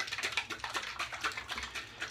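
A quick, irregular run of light clicks and taps, like small objects being handled close to the microphone.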